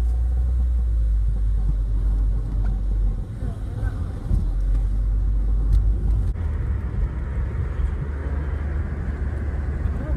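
Steady low rumble of a car driving, heard inside the cabin, with a brighter road hiss joining about six seconds in.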